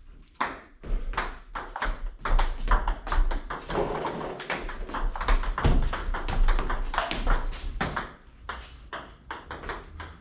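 Table tennis balls being struck by paddles and bouncing on the table: a rapid, uneven series of sharp ticks and pings throughout.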